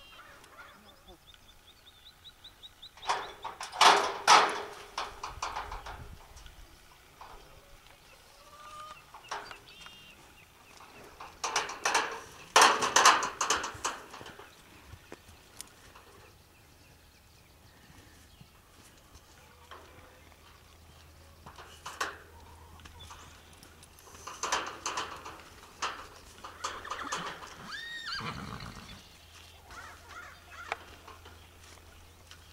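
Metal tube farm gate rattling and clanking in three bursts, a few seconds in, around the middle and toward the end, as it is unlatched and swung open from horseback.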